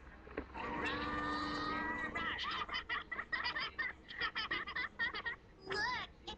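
Cartoon soundtrack playing from a television: a long, wavering cry lasting over a second, then a quick string of short, choppy character voices.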